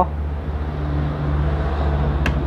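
Low, steady mechanical hum that slowly grows louder.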